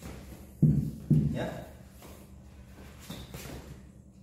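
A man says a couple of short words about half a second and a second in. Fainter scuffs of shoes on a gym floor follow as he steps through the form.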